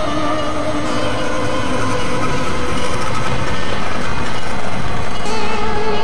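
Experimental electronic noise-drone music: a dense, steady wash of rumbling noise with several held tones running through it, growing slightly louder, and new held tones coming in near the end.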